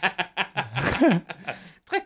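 Men laughing in several short snickers and chuckles.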